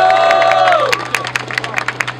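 Crowd cheering and clapping when called to vote by noise for one rapper, with one voice holding a long shout for about the first second and scattered claps continuing after it.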